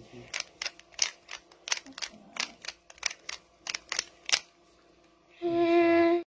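A Rubik's cube clicking as its layers are twisted by hand, about three turns a second for some four seconds. Near the end a loud, steady pitched tone starts.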